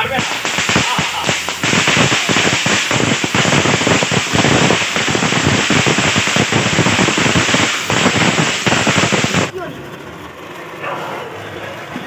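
Ground fountain fireworks (flowerpots) spraying sparks with a loud, rushing hiss full of crackle, dropping to a quieter hiss about nine and a half seconds in.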